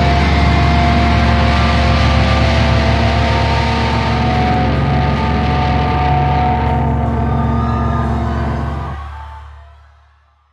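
A live metal band's guitars and amplifiers ring out in a sustained, droning chord over crowd noise, fading out near the end.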